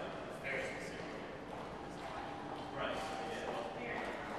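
Quiet lobby room tone with faint, indistinct voices and footsteps on a hard floor.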